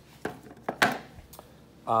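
A few light clicks and knocks from handling objects in a workshop, with a brief scrape just under a second in.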